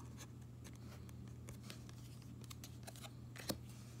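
Faint handling of baseball cards: the cards slide and tap against one another as they are flipped through in the hands, with a small click about three and a half seconds in, over a low steady hum.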